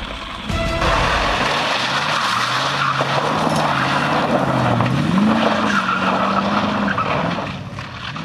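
Classic sports car driven hard on loose gravel, tyres scrabbling and sliding over the engine. The engine note climbs about five seconds in, and the sound fades away near the end.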